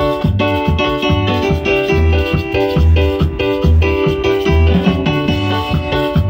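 Live band playing: electronic keyboard chords and an electric bass line over a steady drum beat.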